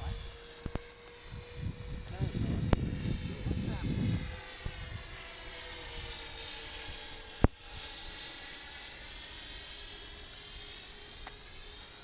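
Electric motors and propellers of a four-motor RC Avro Lancaster model flying overhead: a steady, many-toned whine whose pitch bends slowly as the model passes. A single sharp click comes about seven and a half seconds in.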